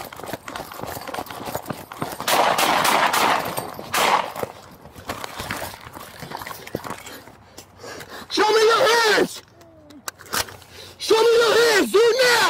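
Rapid footfalls and equipment rattle as a police officer runs, picked up on a body-worn camera, with a burst of rushing noise a few seconds in. Near the end a man shouts loudly twice.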